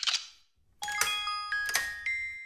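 A brief rasp of a key winding a music box's spring, then, a little under a second in, the music box starts playing a tinkling tune of plucked metal comb notes that each ring on.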